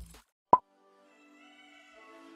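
A single short 'plop' sound effect about half a second in, with a quick drop in pitch. After it, quiet background music with long held notes fades in.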